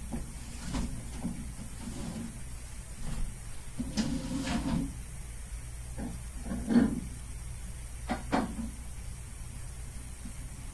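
Glass reptile tank being handled: scattered knocks and clunks, a scraping slide about four seconds in, and the loudest clunk near seven seconds.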